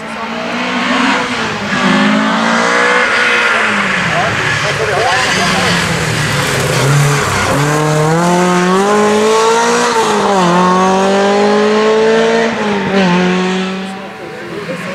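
Classic Ford Escort rally car's engine at hard throttle. Its pitch climbs and drops repeatedly through gear changes, falls away sharply about seven seconds in, then revs up again twice as the car pulls out of the corner.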